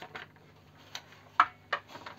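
Grey plastic lid of a BiorbAir 60 terrarium being opened and handled onto its acrylic globe: a few short plastic clicks and knocks, the loudest about one and a half seconds in.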